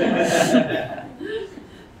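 A few people chuckling and laughing together, loudest in the first second and dying away after about a second and a half.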